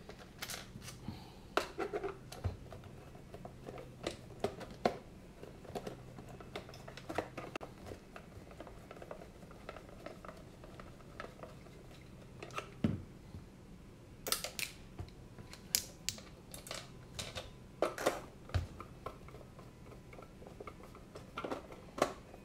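Scattered light clicks and taps of a Phillips screwdriver driving screws into the plastic case of a FrSky X9 Lite radio transmitter as the case is handled, busiest a little past the middle. A faint low hum sits underneath in the first half.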